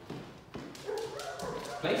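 Small dachshund-mix puppy whimpering and yipping, with footsteps and light taps on a vinyl plank floor.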